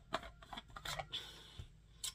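The top of a Stanley 2-quart vacuum thermos being twisted off by hand: a few scratchy clicks and a rasp from the threads.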